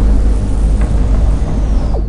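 Loud, deep rumbling drone from a soundtrack, with faint steady tones above it, easing off slightly toward the end.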